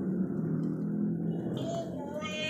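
Dancing plush duck toy's built-in children's song between two sung lines: a quiet low backing from its small speaker, with a faint held note coming in near the end.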